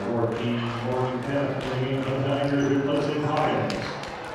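A low-pitched man's voice in long, drawn-out syllables without clear words, fading out near the end.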